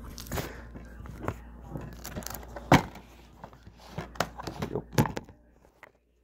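Handling noise from the recording camera being set down and moved about: scattered knocks, clicks and rustles, with one sharp knock nearly three seconds in.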